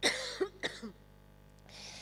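A woman coughing into her hand close to a microphone: one sharp cough at once, two smaller ones over the next second, then a faint breath near the end.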